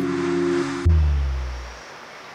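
The song's accompaniment holds a final chord, then cuts off a little under a second in with a sudden deep boom that dies away over about a second.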